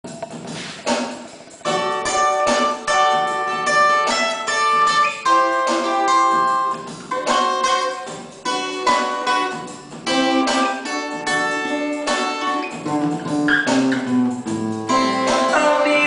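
Cutaway acoustic guitar fingerpicked in a solo introduction: ringing chords and melody notes, each starting with a sharp pluck. It begins softly for the first couple of seconds, then plays out fully.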